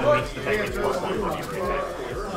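Indistinct talking: murmured voices of players and other people in the room, with no clear words.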